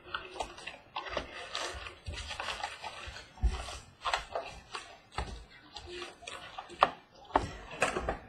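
Cardboard trading-card box being opened and its foil-wrapped card packs handled: irregular rustling and scraping with a few sharp knocks.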